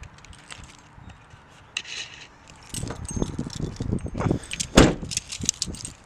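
Metallic jingling and clicking with knocks from handling, sparse at first and busier from about three seconds in, with one loud thump near the end.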